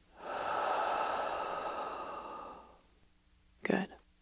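A woman's long, audible exhale through the mouth: a breathy sigh lasting about two and a half seconds that fades out gradually. A brief, short vocal sound follows near the end.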